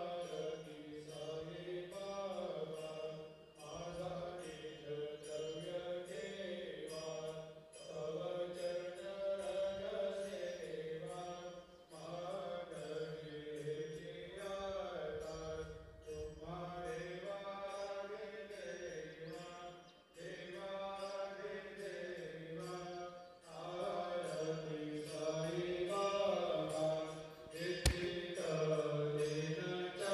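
Devotional mantra chanting, a voice singing in phrases a few seconds long over a steady low drone. A sharp click near the end.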